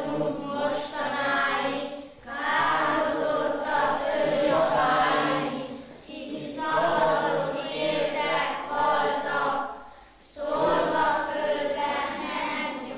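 A class of children singing a song together, in phrases about four seconds long with a short breath between each.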